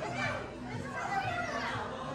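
Background chatter of diners in a restaurant dining room: several overlapping voices, some of them high-pitched, over a steady low hum.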